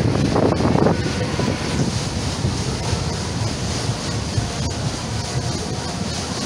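Wind buffeting the microphone over the steady rumble of a fairground ride running, with a louder surge in the first second.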